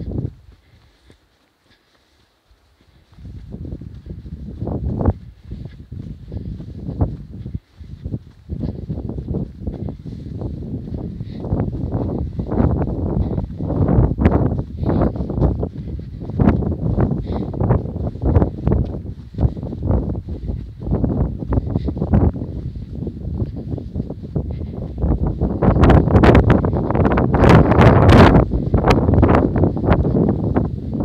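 Wind buffeting the microphone in irregular low gusts; it drops away for about two seconds near the start and is loudest near the end.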